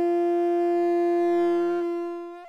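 Conch shell (shankha) blown in one long steady note that weakens and dies away near the end.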